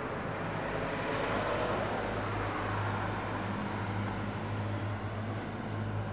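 Street traffic noise, a steady rush of passing vehicles, with a steady low hum underneath. It starts and stops abruptly with the camcorder's cut.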